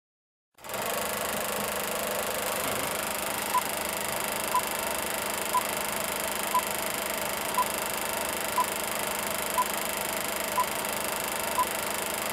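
Film-countdown sound effect: a steady old film projector running with a whir and rattle, and a short high beep once a second beginning a few seconds in, nine beeps in all.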